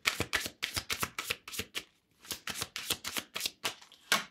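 A tarot deck being shuffled by hand: a quick run of crisp card flicks and slaps, about six a second, with a brief pause about two seconds in.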